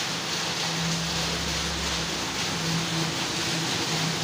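Steady rain falling, a constant even hiss, with a faint low hum that comes and goes.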